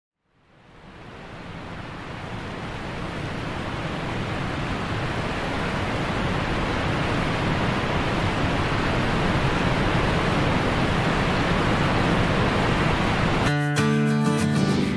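Steady rushing noise of a waterfall heard close by, fading in over the first few seconds. Acoustic guitar music comes in suddenly near the end.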